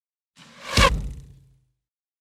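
Logo-sting whoosh sound effect that swells to a peak just under a second in, with a deep low rumble that fades out by about a second and a half.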